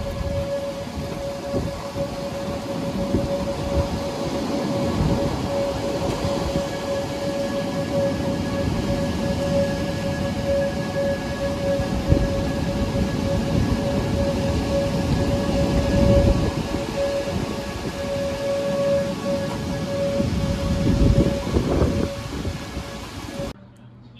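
Steady rain in a thunderstorm, a dense rushing noise that swells several times, with the steady held tone of an outdoor warning siren sounding under it. It all cuts off shortly before the end.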